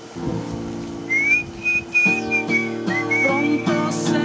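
Song accompaniment with a high whistled melody in two long phrases, the first starting about a second in, over acoustic guitar chords that grow fuller about halfway through.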